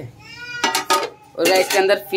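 Metal cooking utensils clinking against a pot and pan, with a brief faint high-pitched call just before the clinks and a man's voice near the end.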